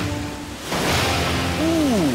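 Water splashing and churning as a person thrashes in a pool, over background music. A loud rush of splash noise starts about two-thirds of a second in.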